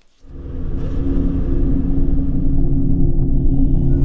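Opening of a show's intro theme: a deep rumbling drone with steady low tones that swells in just after the start and grows loud within the first second, then holds.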